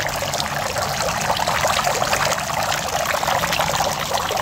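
Small garden fountain: many thin streams of water falling from a canopy into a shallow stone basin, a steady trickling and splashing.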